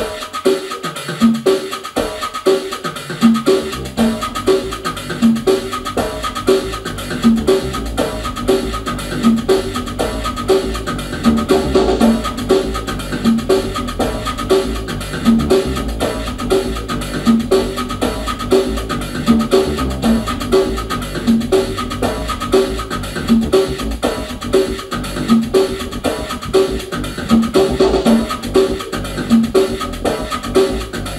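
Electronic Latin groove from drum machines and synthesizer: a steady, evenly repeating percussion pattern with wood-block-like hits, joined by a low bass line about two to three seconds in.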